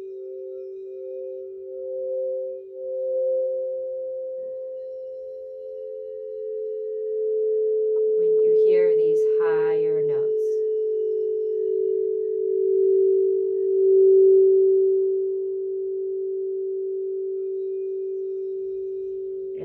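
Two 8-inch frosted crystal singing bowls sounding together in two steady tones close in pitch, played with a mallet, swelling and fading; the higher tone pulses at first.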